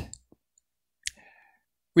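A single sharp click about a second in, with a faint brief ring after it, amid near silence.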